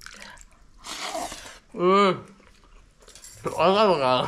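A man eating pakhala (watered rice) by hand: a short wet slurp about a second in, then two brief voiced hums of enjoyment, one midway and one near the end.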